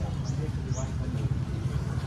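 Street ambience: a steady low rumble of road traffic, with faint voices in the background.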